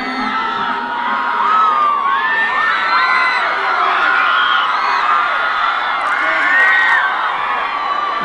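A concert crowd of young fans screaming and cheering, many high voices shrieking over one another without a break.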